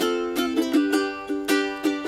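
Ukulele strummed in a steady rhythm, about three strums a second, its chords ringing between strokes.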